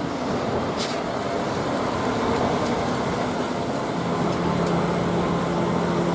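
A MAN concrete mixer truck's diesel engine running as the truck drives past on a street, with a steady rumble and road noise; a steadier, deeper engine note joins in about four seconds in.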